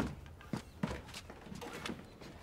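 A child's footsteps: about four soft steps as he walks up to a keyboard.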